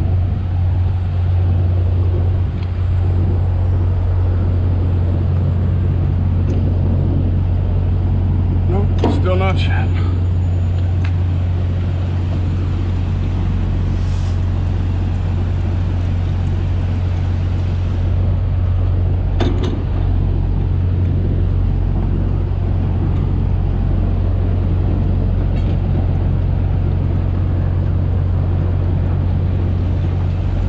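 Semi-truck's diesel engine idling with a steady low hum. A brief voice is heard about nine seconds in.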